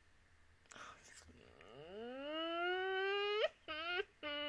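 A woman's wordless vocal sound, muffled behind her hand: a sharp breath about a second in, then a long rising, held "ooh" and two shorter falling notes near the end.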